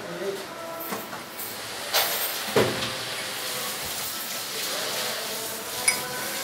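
A few light clinks of a small spoon against a glass as milk is spooned in, over a steady background hiss.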